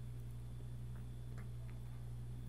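Faint steady low hum with three faint, irregular ticks in the second half.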